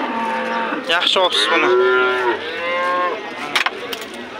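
Cattle mooing: several calls follow one another, two of them longer and held in the middle.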